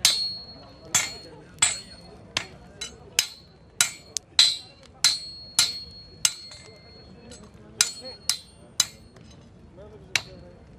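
A hand hammer striking a steel bar on an anvil, about fifteen sharp ringing metallic clangs at an uneven pace of roughly two a second, with a pause of about a second past the middle.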